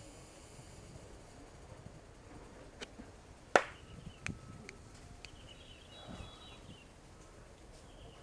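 Sharp hand claps during prayer at a shrine: one loud clap about three and a half seconds in and a weaker one under a second later, with a few fainter clicks around them, in the manner of Shinto prayer claps.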